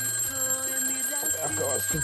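Phone ringing: a steady, high electronic tone, with a man's voice over it.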